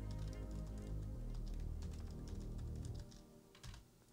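Typing on a computer keyboard, a run of quick key clicks, over quiet background music.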